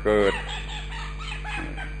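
A man's voice finishes a word, then faint bird calls sound in the background for about a second, over a steady low hum.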